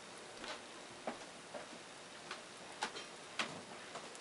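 Flat paintbrush pouncing paint onto a glass wine glass: faint, short ticks about twice a second.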